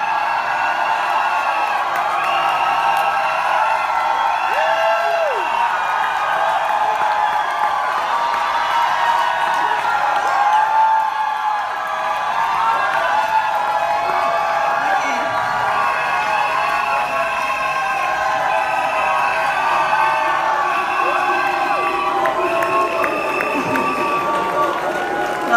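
An audience cheering and whooping over loud music with held notes, with a few shouts standing out.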